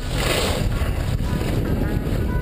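Wind buffeting the camera microphone while skiing fast downhill, with the hiss of skis sliding over snow, loudest in the first half second.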